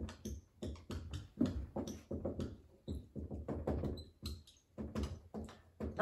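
Dry-erase marker writing on a whiteboard: a run of short, irregular strokes with a few brief high squeaks.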